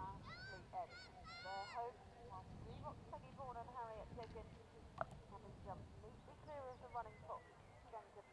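Many short honking bird calls, like a flock of geese, repeated throughout, some rising then falling in pitch. A single sharp click about five seconds in.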